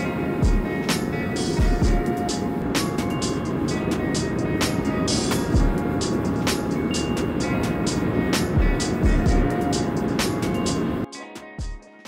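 Background music with a steady beat, over the steady rushing noise of a two-burner gas forge running. The forge noise cuts off suddenly about eleven seconds in, leaving only the music, which fades out.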